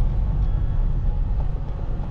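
Inside a moving car's cabin: the engine and tyre road noise make a steady low rumble.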